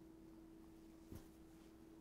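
Near silence: room tone with a faint steady hum and a single soft tap a little past halfway.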